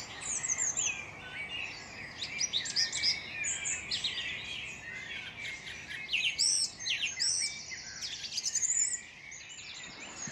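Several songbirds singing at once in a dense chorus of chirps and whistled notes over a faint steady hiss; the singing thins out near the end.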